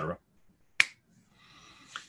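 A single sharp click about a second in, between spoken words, followed by a faint hiss shortly before speech resumes.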